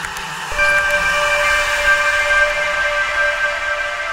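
Ambient synthesizer pad holding a steady sustained chord, a new chord entering about half a second in over an airy hiss.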